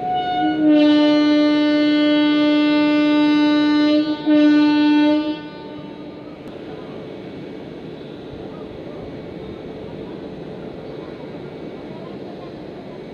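Electric locomotive's horn sounding one long blast of about four seconds, then a brief break and a shorter second blast. After that comes the steady rolling noise of the express's passenger coaches moving past the platform as the train departs.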